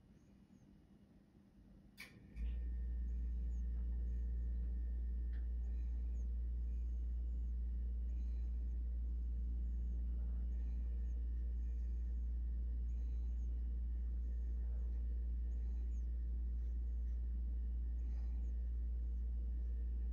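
A low, steady hum switches on suddenly after a click about two seconds in and then holds level. It sounds like an electrical motor or appliance.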